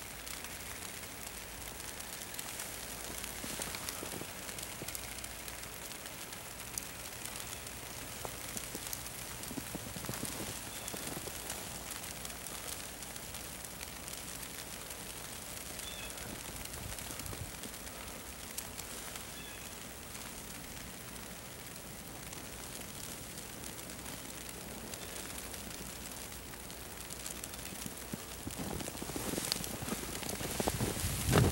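Falling snow outdoors: a steady, soft hiss with faint scattered light ticks of flakes landing.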